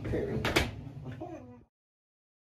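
A man laughing, with one sharp knock about half a second in; the sound cuts off abruptly to dead silence after about a second and a half.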